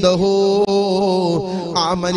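A man's voice chanting in a long, held melodic line, with a quick wavering turn of pitch near the end.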